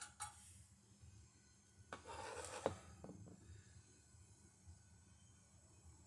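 Near silence, broken by a short scraping sound that ends in a sharp click about two and a half seconds in, as a metal cap is pulled off the pellet stove's combustion port.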